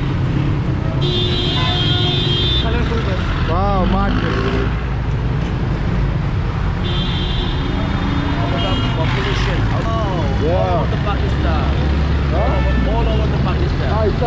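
Dense city street traffic, with motorcycle, car and bus engines running in a constant low rumble. A vehicle horn sounds two long blasts, about a second in and again about seven seconds in.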